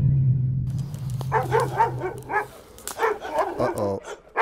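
A low music drone fading out, then a quick run of short, high-pitched cries, about four or five a second, with a falling one near the end.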